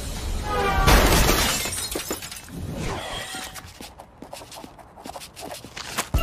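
Cartoon sound effect of a car smashing into the ground: one loud crash about a second in, then glass and metal debris tinkling and clattering, thinning out toward the end.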